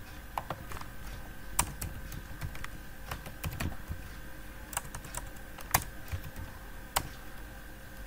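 Computer keyboard typing: irregular keystrokes at an uneven pace, with a few sharper, louder key hits scattered through, as a word is typed, mistyped and corrected.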